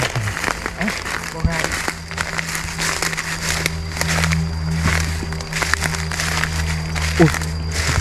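Footsteps crunching and crackling through dry leaf litter and twigs, in many short irregular steps, over a steady low droning background music bed.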